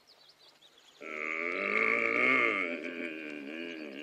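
A bear's growl, a radio-play sound effect: one long growl of about three seconds starting about a second in, loudest in the middle.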